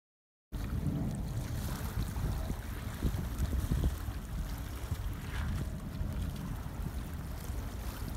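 Wind buffeting the microphone, a fluctuating low rumble, over the faint wash of calm water on a pebble beach; it starts about half a second in.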